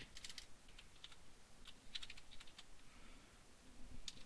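Faint typing on a computer keyboard: a few short runs of keystrokes in the first two and a half seconds.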